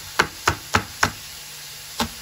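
Chef's knife chopping through chive stems onto a cutting board: four quick, sharp knocks in about a second, then a pause.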